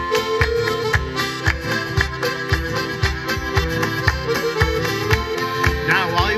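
Accordion and acoustic guitar playing an instrumental passage of a folk song, with hands clapping along on the beat at about two beats a second.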